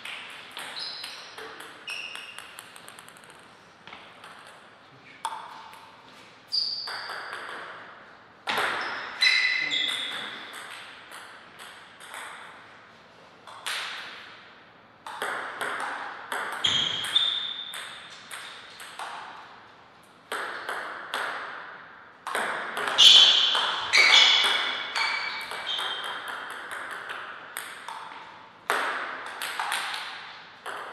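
Table tennis ball being hit back and forth with paddles and bouncing on the table in rallies, a run of sharp clicks with short ringing tones. Between the rallies come pauses and looser clusters of lighter ticks.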